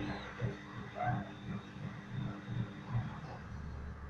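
Teaspoon faintly scraping and tapping fine ground coffee into a small aluminium coffee capsule, over a steady low hum. A brief high squeak comes about a second in.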